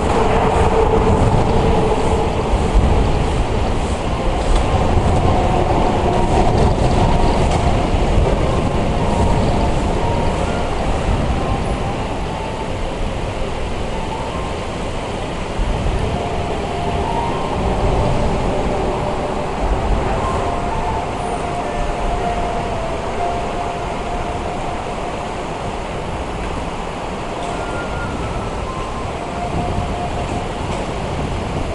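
A steady, loud low rumble with a rushing hiss over it. It is a little louder in the first third, with a few faint short tones drifting through it.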